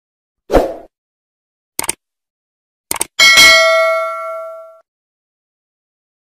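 Subscribe-button animation sound effects: a short thump, then two quick clicks, then a bell ding that rings out and fades over about a second and a half.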